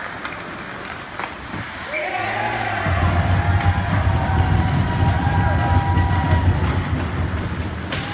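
Ice rink goal horn sounding one long, steady, low blast of about five seconds, starting about three seconds in, which signals a goal. Voices rise around it, and hockey sticks and the puck clack on the ice before it.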